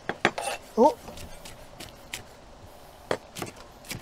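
A knife and plastic cutting board clicking and knocking against the rim of a cooking pot as chopped vegetables are scraped off the board into it. The sharp clicks come in a scattered series, the loudest about three seconds in.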